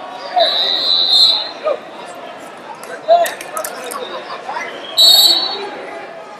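Two referee's whistle blasts echoing in a large hall, the first lasting about a second near the start and a shorter, louder one about five seconds in, over shouting and chatter from the crowd and other mats.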